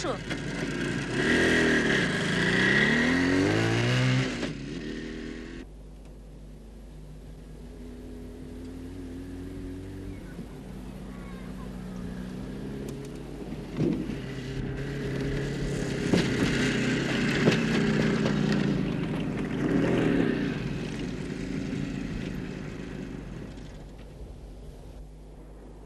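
Motorcycle-and-sidecar engine revving as it pulls away, its pitch rising and falling. It then runs at a steadier note across open ground, growing louder for a few seconds past the middle and fading near the end.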